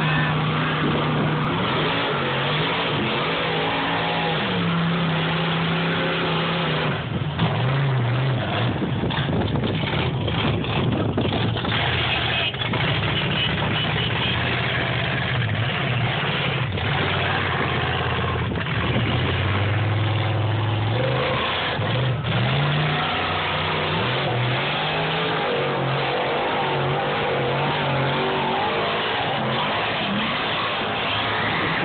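Pickup truck engine revving hard through a mud bog, its pitch rising and falling over and over as the throttle is worked.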